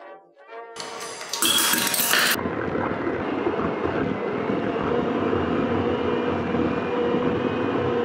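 Handheld electric mixer running steadily, its beaters creaming butter and sugar in a bowl, with a steady motor drone. For the first second or so after it starts there is an extra loud rushing sound.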